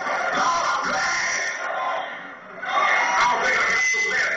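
Church music playing loudly amid the voices of a congregation, with a brief drop in loudness a little past halfway.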